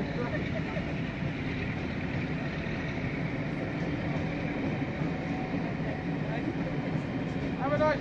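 Steady running noise of a moving train heard from on board, even throughout, with a laugh at the start and a short spoken word near the end.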